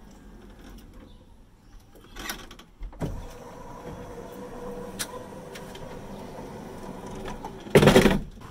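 Wheelchair van's powered fold-out ramp deploying: a couple of clicks, then from about three seconds in the ramp's electric motor hums steadily as the ramp unfolds, ending in a loud thump as it comes down onto the pavement near the end.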